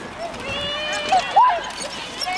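Children's voices shouting and calling, high-pitched, with one call rising sharply to a squeal about a second and a half in.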